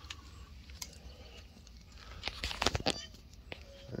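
Quiet background with a few sharp clicks, then a short cluster of clicks and rustles about two and a half seconds in: handling and movement noise as the handheld camera is carried back from the bike.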